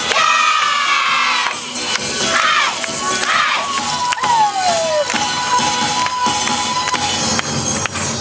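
A group of dancers shouting calls together over loud dance music, several short shouts in the first few seconds.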